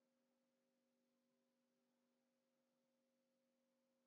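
Near silence, with only an extremely faint steady low hum of a few held tones.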